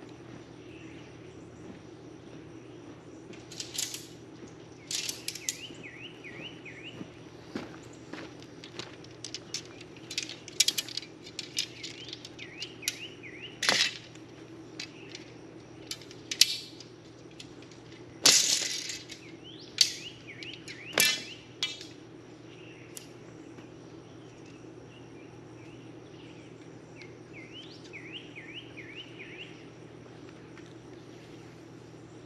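Scattered clicks, taps and rustles from handling the rods, straps and fabric of a roof shade, with one louder scrape lasting about a second a little past the middle. Short runs of high chirps sound in the background now and then.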